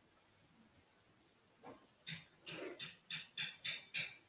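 Faint breathing: a run of short breathy puffs in the second half, the last few quick and sharp at about three a second, like panting or sniffing.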